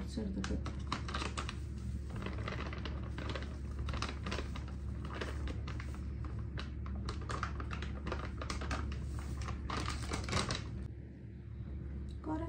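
A plastic food packet crinkling and crackling in the hands as it is handled and opened: a dense, irregular run of crisp crackles that stops near the end.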